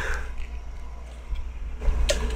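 Low steady hum under room tone, with a faint short noise near the start.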